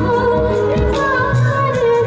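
A woman singing a slow Hindi film song live into a microphone, holding long notes over amplified band accompaniment.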